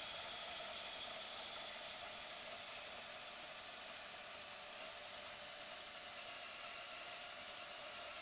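DeWalt 20V Max cordless band saw cutting through four-inch steel pipe: a steady, fairly faint hiss with a thin high whine from the blade in the steel.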